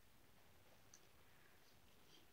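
Near silence: room tone, with one faint tick about halfway through.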